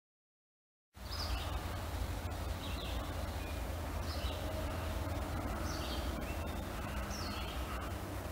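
Red-eyed vireo singing: five short, separate phrases spaced about a second and a half apart, starting about a second in, over a low steady rumble.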